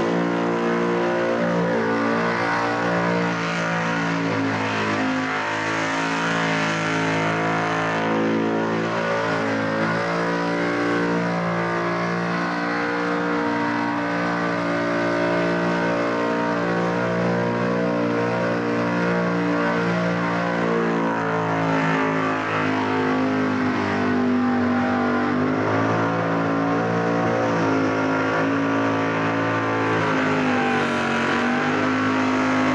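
Engine of a supercharged Holden burnout car held at high revs while its rear tyres spin, the pitch wavering up and down as the throttle is worked. It stays loud and unbroken throughout, with the revs dipping for a moment about three quarters through.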